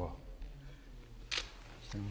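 A single camera shutter click about one and a half seconds in, over a faint low murmur of voices.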